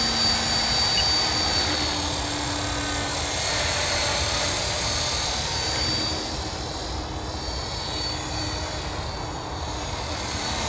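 Align T-Rex 450 electric RC helicopter in flight: the steady high whine of its brushless motor and gears over the whir of the rotors. It grows a little fainter between about six and nine seconds in, as the model flies farther off.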